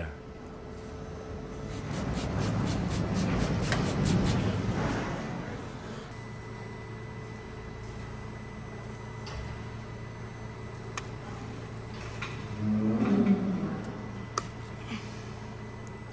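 Hoof knife paring the horn of a cow's hoof wall: a run of short scraping strokes over a few seconds early on, against a steady low hum. Another brief, louder sound with some pitch comes about thirteen seconds in.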